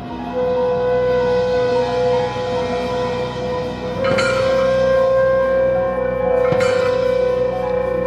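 Clarinet holding long, sustained notes over a slow, layered band texture. Two struck percussion accents come about four and six and a half seconds in.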